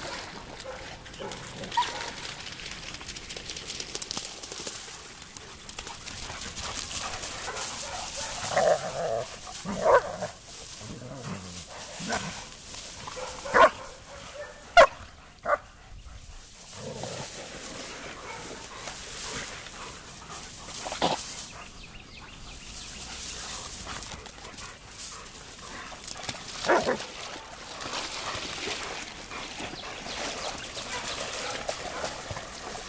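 German Shepherds barking and whimpering in play, a scattering of short sharp barks with the loudest in the middle stretch and another near the end, over a steady noisy background.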